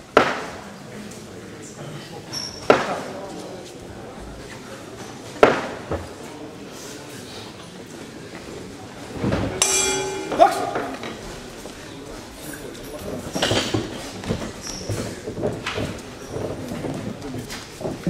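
Three sharp knocks echo through a large hall, a few seconds apart. About nine and a half seconds in, a boxing ring bell rings briefly for the start of a round, followed by the voices of the crowd and corners.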